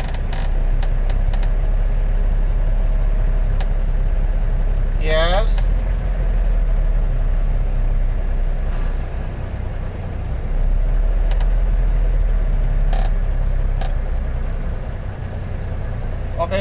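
Semi-truck diesel engine running as the truck drives slowly, heard from inside the cab as a steady low rumble that eases off about two-thirds of the way through and then picks up again.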